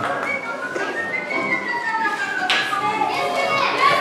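A crowd of children's voices chattering and calling out at once, with music in the background.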